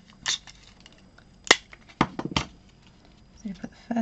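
A desktop Scotch tape dispenser being handled on a craft table: tape pulled off and torn on the cutter, with a few sharp clicks and knocks, the strongest about a second and a half in and a quick run around two seconds.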